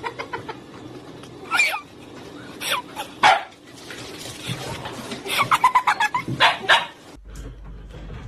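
A dog barking and yipping several times, with a quick string of yips past the middle and louder barks shortly after.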